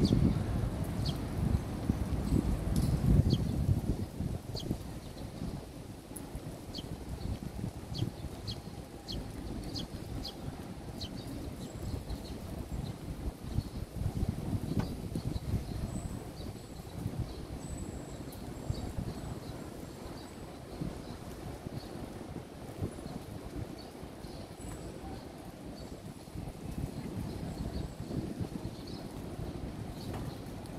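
Open-air city ambience: a steady low rumble of wind and distant traffic, louder in the first few seconds, with small birds chirping in short high chirps, a quick run of them in the first ten seconds and fewer after.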